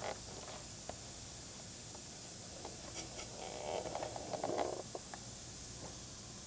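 Steam radiator hissing steadily as the heat comes up, with a few sharp clicks and a burst of rapid knocking and rattling about four seconds in.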